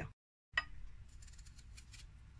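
After a brief dead silence, faint crisp clicks from a knife slicing a raw peeled potato held in the hand, with the rounds landing in a glass baking dish.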